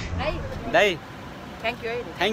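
Speech: voices talking in short phrases, with a brief pause in the middle.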